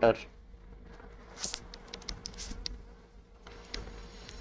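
Stylus scratching and tapping on a tablet screen in short, irregular strokes while writing, over a faint steady hum.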